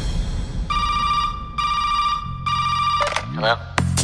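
Funkot dance remix at a break. The drums drop out, and a phone-ring-like electronic beep sounds three times, each about a second long. A bass line comes in about halfway through, and near the end a short rising-and-falling swoop leads back into the beat.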